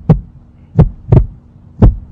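Heartbeat sound effect: paired low thumps, lub-dub, about once a second over a steady low hum, a dramatic suspense cue.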